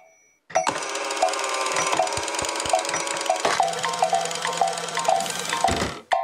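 A busy, whimsical mechanical sound effect with a short note repeating about three times a second. It starts about half a second in and stops just before the end.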